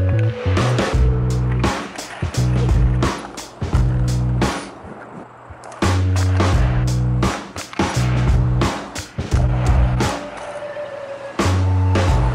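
Background music with a steady beat and bass line, over the sounds of a skateboard on concrete: wheels rolling, the tail popping and the board clattering down during kickflip attempts.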